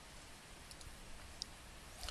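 Faint computer mouse clicks over quiet room tone: a few soft clicks, the clearest about a second and a half in.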